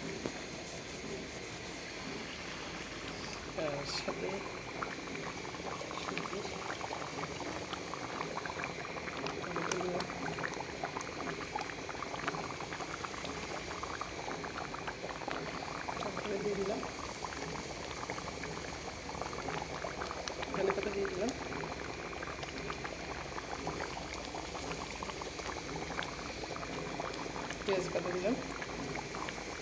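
Beef and potato curry boiling in a karahi, the thick sauce bubbling and popping steadily with a dense crackle.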